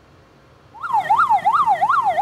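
Ambulance siren starting about a second in, its pitch sweeping rapidly up and down, roughly three cycles a second.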